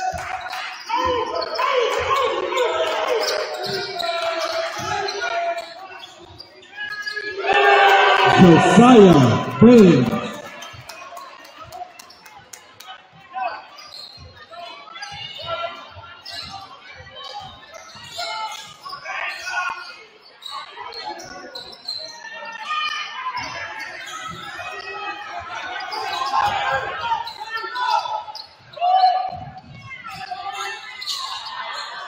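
A basketball bouncing on a hardwood gym floor during play, with players' and spectators' voices in a large gymnasium. A loud burst of shouting comes about eight seconds in.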